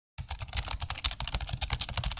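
Computer-keyboard typing sound effect: a fast, continuous run of keystroke clicks, starting a moment in.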